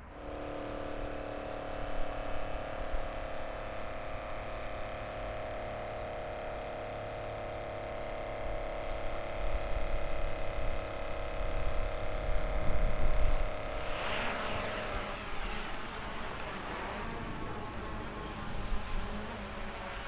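Small electric spray pump whirring steadily. The sound changes about fourteen seconds in.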